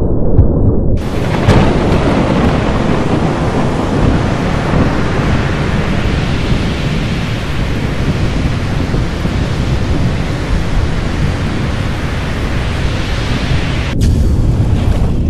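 Thunderstorm sound effect: a deep rolling rumble of thunder under a steady hiss of heavy rain, the rain coming in about a second in.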